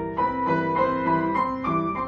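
Grand piano played solo: a melody of notes struck a few times a second over sustained lower notes, ringing in a reverberant hall.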